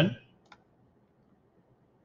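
A single computer mouse click, about half a second in.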